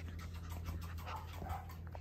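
A corgi puppy sniffing and breathing right at the microphone, with scratchy rubbing and a few clicks, over a steady low hum.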